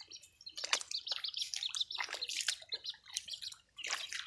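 A duckling peeping over and over in short, high chirps, with wet steps squelching through paddy-field mud.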